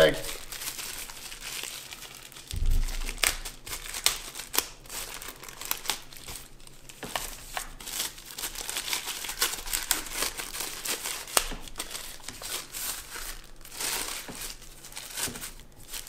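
Plastic packaging bag crinkling and crackling irregularly as a portable Bluetooth speaker is unwrapped from it by hand, with a low thump about two and a half seconds in.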